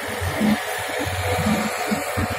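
Tractor-driven clay mixing machine running, with its tractor engine, a steady mechanical noise with a low rumble as it turns out mixed clay.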